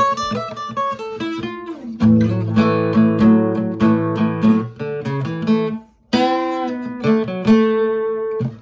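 Steel-string acoustic guitar playing a blues chord lick. It opens with a quick run of single notes, and from about two seconds in a fuller passage of repeated chord-and-note attacks follows. After a brief break just before six seconds, a last phrase ends on a held note.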